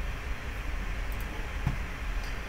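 Steady low background hum of a room, with one faint click about one and a half seconds in.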